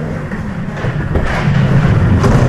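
Skateboard wheels rolling over a concrete floor, a steady rumble that grows as the board comes close.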